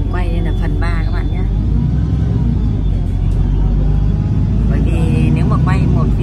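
City bus under way, heard from inside: a steady low rumble of engine and road noise.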